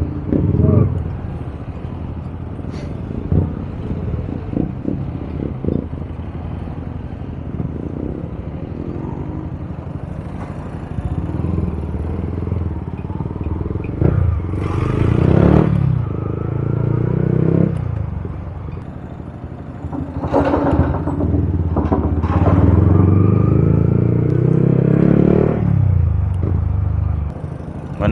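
Yamaha MT-15's single-cylinder engine running at low speed, the revs rising and falling as the throttle is opened twice in the second half. A few knocks in the first seconds.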